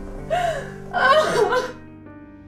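A woman crying with two gasping sobs, the second longer, over soft background music with held notes.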